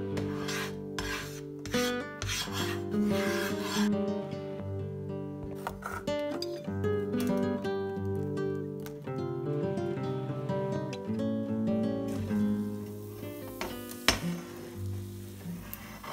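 A spatula rubbing and scraping across a nonstick frying pan, spreading melting butter, in a series of strokes over the first few seconds. Acoustic guitar background music plays throughout.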